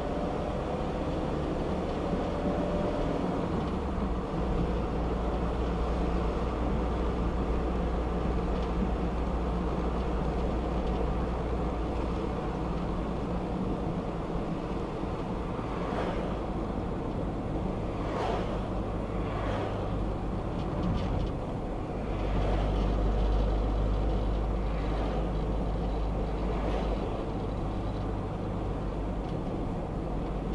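Steady road and engine rumble inside a car cruising at about 30 mph. In the second half, several short swishes come as other traffic, including a van, passes alongside.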